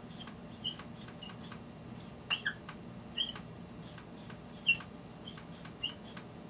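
Dry-erase marker drawing on a whiteboard: short, irregular high squeaks and light taps as strokes are made, the loudest squeak about three-quarters of the way through, over a low steady hum.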